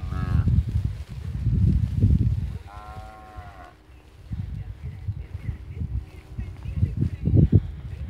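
Young Jersey and Jersey-Holstein cross heifer calves mooing: a short call right at the start and a longer one about three seconds in, each rising and falling in pitch. Wind buffets the microphone in low gusts throughout.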